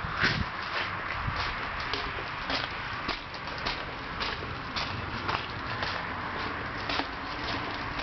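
Footsteps on a gritty concrete floor, about two steps a second, over a steady background hiss.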